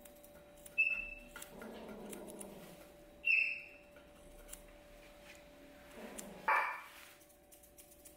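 Bichon frise whining in three short, high-pitched cries, about a second in, just after three seconds, and a last one rising in pitch near six and a half seconds, while grooming scissors snip around its face.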